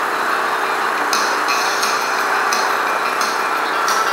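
Steady outdoor engine and traffic noise, with light clicks and rattles coming and going from about a second in.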